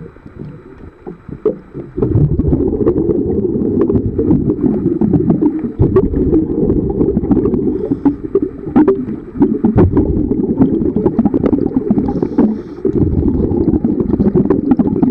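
Underwater recording of a scuba diver's exhaled bubbles rumbling past the camera in long spells a few seconds apart, with brief lulls between breaths. Scattered sharp clicks run through it.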